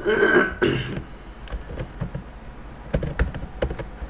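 A person clears their throat, then a scatter of computer keyboard keystrokes, most of them about three seconds in.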